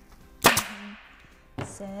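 Pneumatic staple gun firing once, a sharp crack about half a second in, driving a staple through padding into the board beneath. A short voice near the end.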